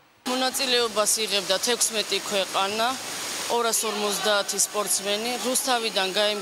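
A woman speaking, her voice set over a steady wash of splashing water in an indoor swimming pool; the water noise is heard on its own in a brief pause about halfway through.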